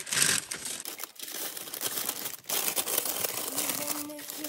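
Parchment paper and aluminium foil crinkling as hands fold them around an unbaked stromboli, the loudest rustle in the first second, then irregular crackling.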